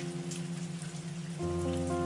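Water swishing and splashing as hands rub mushrooms around in a bowl of water, over soft background music with held notes; a new chord comes in about one and a half seconds in.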